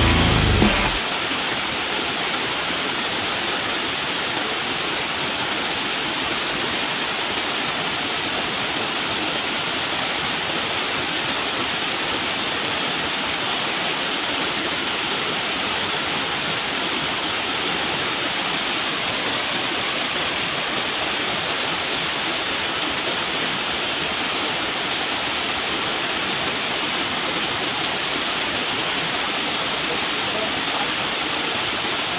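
Fast river rapids rushing over boulders: a steady, even noise of white water that does not change throughout.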